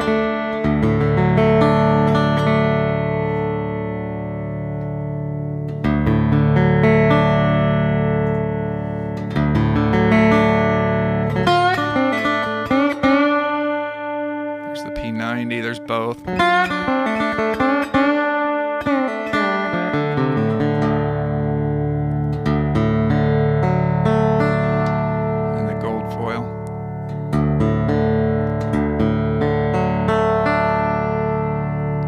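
Beard Road-O-Phonic resonator lap steel guitar played with fingerpicks and a steel slide, amplified through its magnetic pickups: ringing chords struck several times and left to sustain, with sliding notes gliding up and down through the middle.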